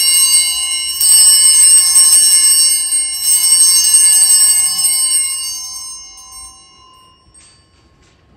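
Altar bells shaken, with fresh rings about one and three seconds in, then ringing out and fading away near the end. They are the bell signal for the elevation of the chalice at the consecration of the Mass.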